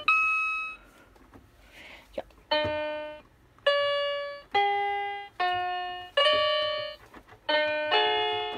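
Roll-up silicone electronic keyboard playing through its own small built-in speaker: about seven single piano-like notes, one at a time, each starting sharply and fading out, with a pause of over a second after the first note, making a slow, halting little tune.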